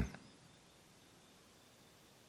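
Quiet room tone: a man's spoken word fades out right at the start, then only faint steady background hiss.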